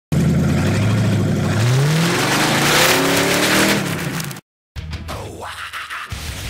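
Car engine accelerating hard, its pitch climbing as it revs up, then cutting off suddenly about four seconds in. A quieter sound follows.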